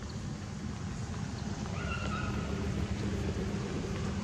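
A young macaque gives one short, steady-pitched high call about two seconds in, over a continuous low rumble.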